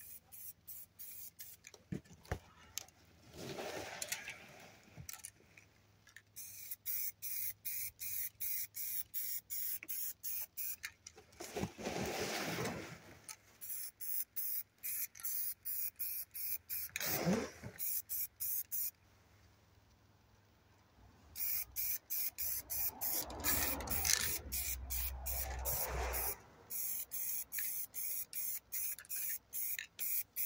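Aerosol spray paint can sprayed in many short puffs, about three a second, in three runs with short pauses between them. A few longer, louder noises fall between the puffs.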